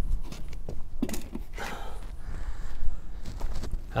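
Footsteps and scuffing on paving slabs as a heavy plastic pot of potatoes is shifted and set down onto a digital platform scale, with a thump about three seconds in. A steady low rumble sits underneath.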